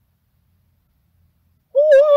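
Near silence, then about three-quarters of the way in a woman's loud, wavering scream from an anime soundtrack starts suddenly and carries on past the end.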